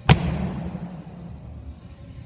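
One loud thud just after the start, with a low ringing tail that dies away over about half a second: a person landing with both feet from a jump onto a BOSU balance ball set on top of a plyo box.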